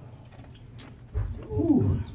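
A blast of breath or handling thump on the microphone just after a second in, then a short wordless vocal sound from a man at the microphone that falls in pitch, a nervous groan or exhale.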